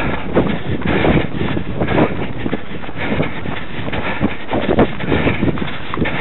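A runner's footfalls on a grass path, picked up as a steady rhythm of thuds by a camera carried on the runner, with rustling and jostling of the camera against the body.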